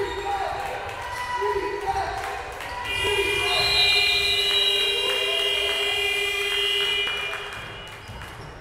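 A basketball bouncing on a hardwood court with short squeaks. About three seconds in, an electronic sports-hall buzzer sounds one steady tone for about four seconds, then stops.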